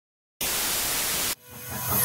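A burst of television static hiss, about a second long, that starts suddenly and cuts off abruptly. Music then begins to fade in near the end.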